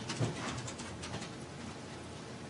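Quiet courtroom room tone with a faint steady hiss; a brief low sound about a quarter second in.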